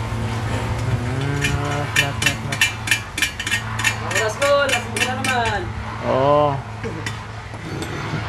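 A quick run of sharp metallic clicks and taps for about three seconds, several a second, over a steady low hum.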